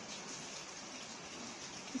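Steady hiss of background noise, with no distinct sound standing out.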